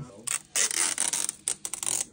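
Old adhesive tape being peeled off the plastic arch of a Beats Studio 3 headband: a rough, rasping rip with sharp clicks, starting a moment in and running on through the rest.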